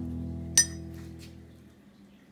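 Metal spoon clinking against a ceramic coffee mug while stirring: one sharp clink about half a second in, then a couple of lighter taps. Underneath, a held music chord fades away.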